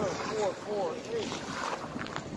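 Wind buffeting a phone microphone, with faint, indistinct voices in the background during the first second.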